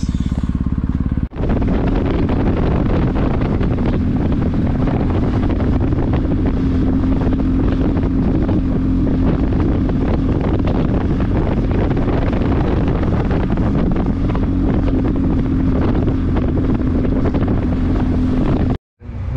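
Motorcycle engine running at a steady, low road speed, with wind noise on the microphone. The sound drops out briefly about a second in.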